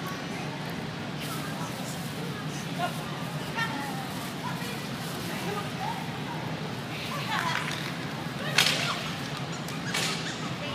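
Large indoor hall's steady low hum with faint distant voices, and one sharp, loud crack or cry about eight and a half seconds in.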